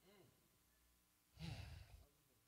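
Near silence, broken about one and a half seconds in by a short, faint sigh lasting about half a second.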